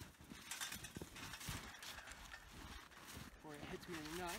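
Faint, scattered knocks and creaks of a metal ladder-style treestand as it is tipped over and lowered by hand.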